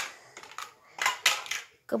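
Large plastic building blocks clattering against one another as a child's hand pushes through a scattered pile, with a louder run of clatter about a second in.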